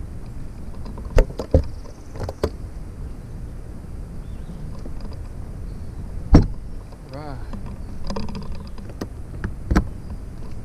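Several sharp knocks and thumps as the storage hatch lids and deck compartment covers of a bass boat are handled and shut, the loudest about six seconds in, over a steady low rumble of wind on the microphone.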